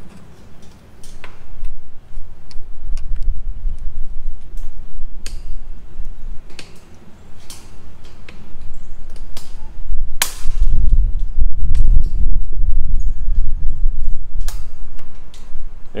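A wire T-post clip being bent and wrapped around a steel T-post and wire panel with fencing pliers: irregular metal clicks and scrapes, with one sharp click about ten seconds in, over a low rumble.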